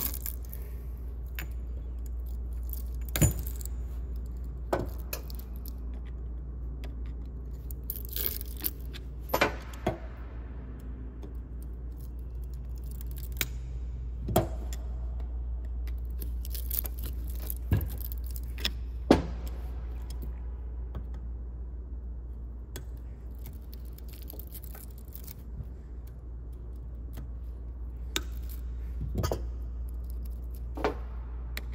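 Scattered metallic clicks and clinks as cut copper winding pieces are pulled and pried out of a ceiling fan motor's steel stator, over a steady low hum. The loudest clinks come about three seconds in and just after the middle.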